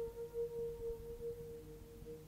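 Electric guitar holding one long, pure note that pulses in loudness, the start of a solo improvisation, with cassette-tape hiss and a low hum underneath.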